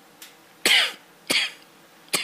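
A man coughing twice: two short harsh coughs about two-thirds of a second apart, the first the louder.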